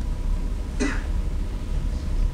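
A single short cough or throat-clearing from a person about a second in, over a steady low room hum.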